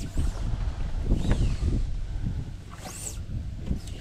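Wind buffeting the microphone on an open boat, a steady low rumble, with a few short, high, rising-and-falling whistles over it.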